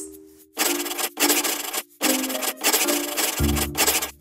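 Intro sound effect of about four long, scratchy rasping strokes, like a pen scribbling, over a short musical jingle with held notes.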